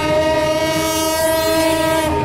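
A long horn blast: one steady note held for about two seconds, stopping near the end.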